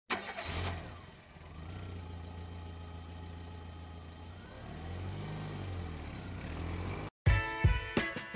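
A car engine starts with a short loud burst, settles into a steady idle, and revs up and back down about five seconds in. It cuts off suddenly near the end, and music with plucked notes and a beat begins.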